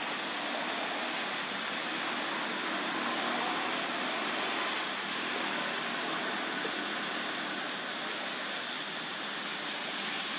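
Steady outdoor background hiss at an even level, with no distinct knocks, splashes or calls standing out.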